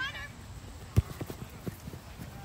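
A soccer ball kicked with one sharp, loud thump about halfway through, followed by a quick run of lighter thumps from footsteps running on grass.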